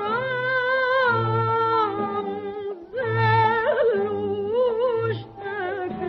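Early Arabic studio recording of a taqtuqah in maqam Huzam: a woman sings ornamented, wavering melodic phrases with short breaks over a small ensemble, with a low recurring pulse underneath. The sound is thin and dull at the top, as on an early 1930s recording.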